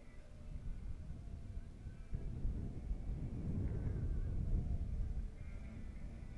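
Wind rumbling on the microphone of a camera riding along on a moving bicycle, swelling louder through the middle and easing near the end.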